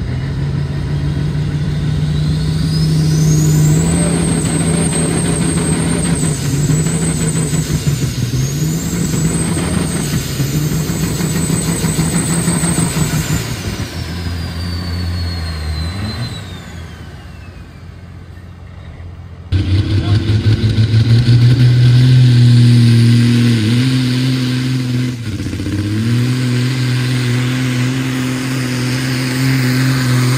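Semi-truck diesel engines at full load pulling a sled: a turbocharger whistle climbs to a high scream and holds for about ten seconds, then falls away as the engine winds down. After an abrupt cut about two-thirds of the way in, another diesel semi pulls louder and steady, its engine pitch dipping briefly twice.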